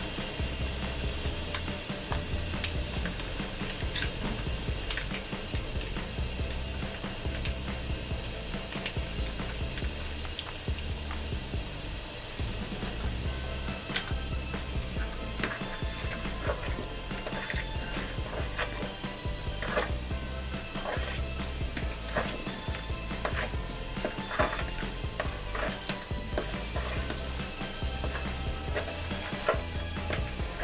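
A spoon mixing a potato, carrot and tuna salad with mayonnaise in a plastic bowl, with repeated clicks and scrapes against the plastic, more frequent in the second half. Background music with a steady bass plays underneath.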